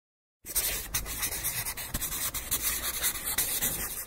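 Pen scratching continuously across a drawing surface as lines are sketched, starting about half a second in.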